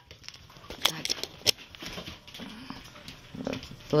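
Puppies moving about on a bare hardwood floor: scattered clicks and taps of claws and paws, with light rustling of torn paper and plastic.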